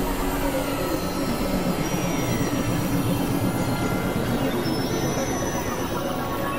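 A dense, steady wash of experimental noise and drone from several music tracks layered over one another. It holds a few steady tones, with faint falling glides drifting through it.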